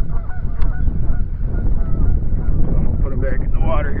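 Geese honking repeatedly in the background over a steady low rumble of wind on the microphone.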